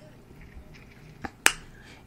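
Two short, sharp clicks about a quarter of a second apart, the second the louder, over quiet room tone.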